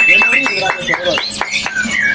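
White-rumped shama (murai batu) in full song: a rapid run of varied whistles, pitch glides and short sharp notes, opening with one held high whistle.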